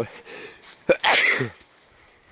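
A man sneezing once, about a second in: a sudden sharp burst that falls away within half a second.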